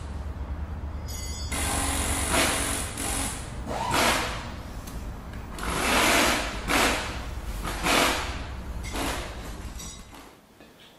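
Edited intro soundtrack: a steady low drone with about six short rushing noise bursts laid over it, each swelling and fading within about half a second.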